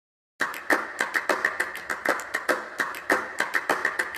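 A quick run of sharp clicks or taps in an uneven rhythm, several a second, starting about half a second in after a brief silence.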